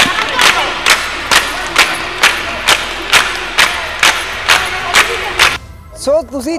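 Group of women clapping in unison, about two claps a second, with many voices singing along: the rhythm of a Punjabi giddha dance. The clapping and singing stop shortly before the end.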